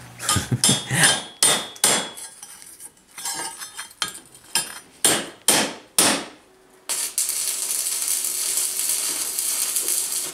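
Hammer blows on a curved 4 mm steel plate held over a vice, about a dozen ringing metal strikes in the first six seconds. About seven seconds in, the steady hiss of arc welding starts.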